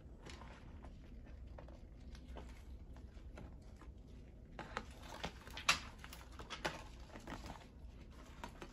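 Hands handling incense sticks and small objects: scattered light clicks, taps and rustles, busier from about halfway through, with one sharper click just after that.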